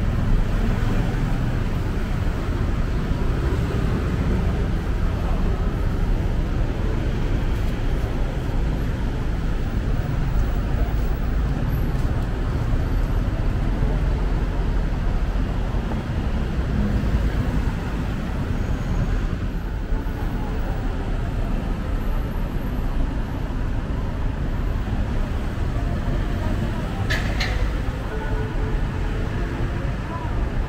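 Steady city road traffic: cars passing on a busy multi-lane road, heard as a constant low rumble with no pauses. A brief sharp click comes near the end.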